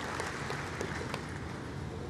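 Large audience applauding, a steady patter of clapping that eases off slightly.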